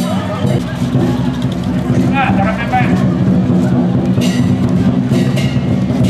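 Street-procession sound: crowd voices over a steady low drone, with two sharp metallic crashes, like cymbals, ringing out in the second half.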